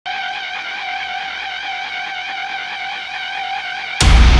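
Music: a single held electronic note with a slight, even wavering in pitch, at a moderate level.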